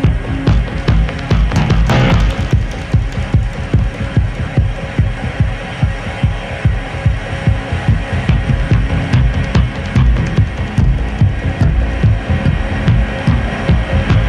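Live homemade techno: a steady, driving electronic kick beat with heavy bass, overlaid with sharp metallic clicks and rattles from piezo-amplified springs and metal tines.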